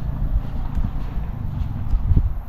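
Footsteps on a concrete slab, a few irregular thuds and scuffs, over an uneven low rumble of wind on the microphone.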